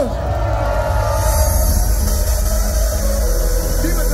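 Loud hard dance music over a festival sound system, with a steady heavy bass. A held note slides down in pitch at the very start, then a rising noise build-up swells from about a second in.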